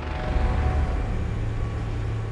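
A low, steady rumble with a held low hum underneath.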